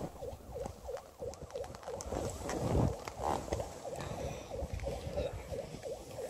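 Skis running through powder snow heard on a body-worn camera, with wind on the microphone and a faint short squeak repeating about three times a second.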